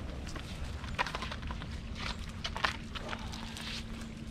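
Footsteps on dry leaf litter, then shoes scuffing and scraping against tree bark as a person climbs the trunk: irregular short scrapes and rustles.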